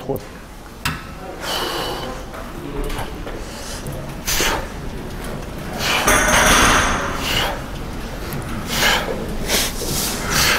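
A man breathing hard in time with the reps of a wide-grip lat pulldown on a cable machine, sharp noisy breaths every second or two. The longest and loudest breath comes a little past the middle.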